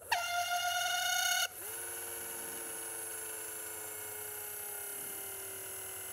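Small 9-volt DC hobby motor whining as it spins a CD pinwheel, run from an Arduino push button. A louder whine for about a second and a half, then a sudden drop to a quieter, steady whine.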